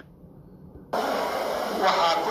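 A brief lull of low hum, then about a second in a loud, dense hiss with voices in it cuts in: broadcast audio played through a television's speaker.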